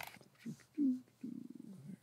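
A man's wordless hesitation sounds: a short falling 'hm' just under a second in, then a low, creaky, drawn-out 'uhh'.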